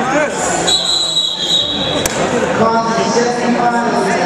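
A referee's whistle blown once, a steady shrill tone lasting just over a second, amid spectators shouting. Near the end the voices turn into drawn-out, held yells.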